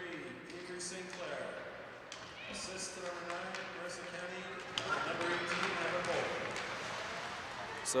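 Ice hockey rink ambience during play: skate blades scraping and sticks and puck clacking on the ice, with people talking in the background.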